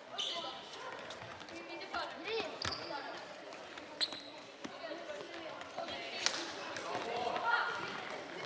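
Floorball game in a reverberant sports hall: players and spectators shouting, with sharp clacks of sticks striking the plastic ball, the loudest about four seconds in and again just after six seconds.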